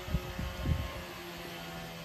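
A faint steady low hum, with some low rumbling in the first second.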